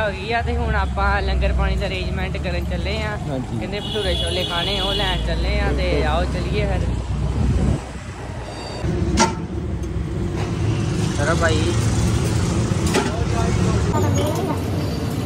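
Men talking over street noise for the first half. After a cut about eight seconds in, a Honda scooter runs along a narrow lane, its small engine humming steadily under road noise, with a sharp click just after the cut.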